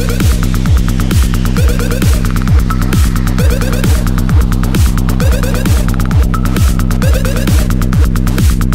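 Hard techno track: a heavy kick drum on a steady beat of about two strikes a second over a throbbing low bass drone, with fast, dense high percussion ticking on top.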